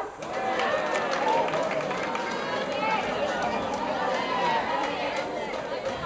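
Many voices shouting and calling out at once, overlapping without a break: the chatter of players and supporters at a baseball game.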